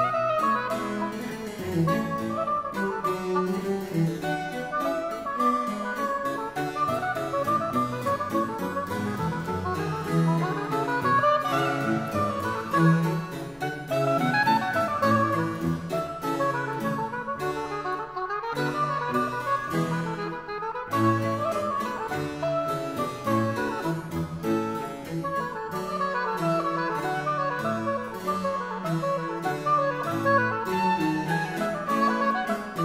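Baroque chamber music: a harpsichord playing a busy run of quick notes with other instruments over a steady bass line.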